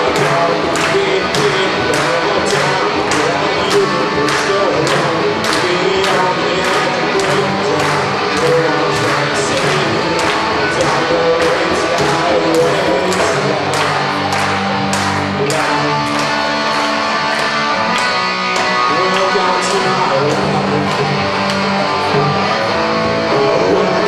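Rock song played by a band: electric guitars and drums with a steady cymbal beat about twice a second, with singing.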